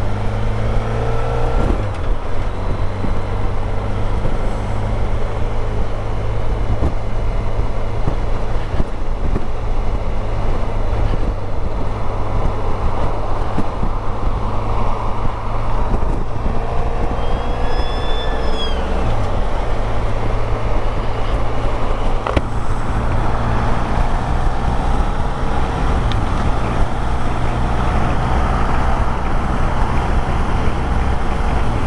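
Honda VFR1200X Crosstourer's V4 engine running steadily under way, mixed with wind and road rush. The engine note dips briefly about two-thirds of the way through, then picks up again.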